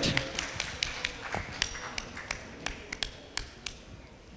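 Scattered hand clapping from a few people, separate sharp claps rather than a dense applause, thinning out and fading away over the few seconds.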